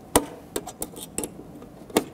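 A handful of sharp clicks and light knocks, loudest just after the start and again near the end, as a mercury gas discharge tube and its holder are handled and set in place.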